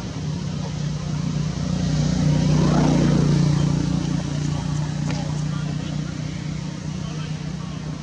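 A motor vehicle's engine hum going past, swelling to its loudest about three seconds in and then slowly fading.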